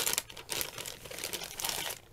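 Clear plastic bag crinkling as it is handled and opened, with a sharp rustle at the start and irregular crackling after it.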